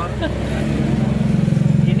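A motor vehicle engine running with a rapid low pulse, swelling louder about a second and a half in.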